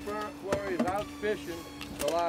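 People talking and exclaiming, with a steady low hum underneath.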